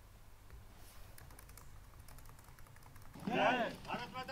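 A scatter of faint, quick clicks over a quiet background, then, about three seconds in, a voice calling out loudly, starting a slogan shouted with raised fists.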